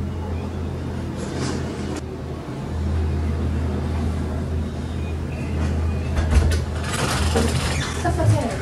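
Low, steady rumble of a heavy vehicle going by outside, growing louder about two and a half seconds in. Near the end come clicks and knocks as the bedroom door opens.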